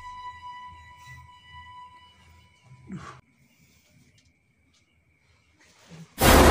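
Horror-film soundtrack drone, a held high tone over a low hum, fading away over the first two seconds. About three seconds in comes one short sound that falls in pitch, then near silence.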